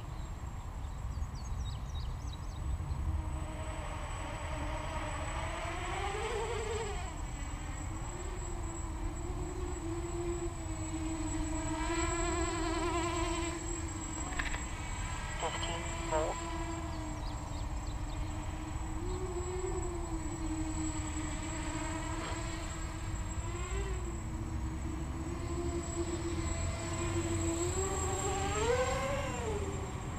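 Quadcopter's electric motors and propellers buzzing overhead on a 4S battery. The pitch swings up and down with the throttle as the pilot tries to hold altitude, with sharp rises about seven seconds in and near the end.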